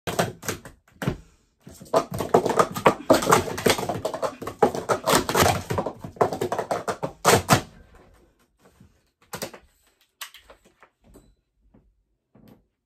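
Plastic sport-stacking cups clattering in a rapid run of clacks as they are stacked up and down on a mat. The run stops about seven and a half seconds in, leaving only a few faint handling taps.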